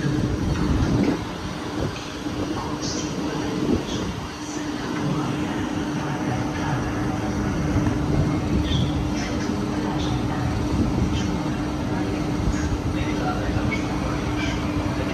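Steady electrical hum from a CP passenger train standing at the platform, over a low rumble.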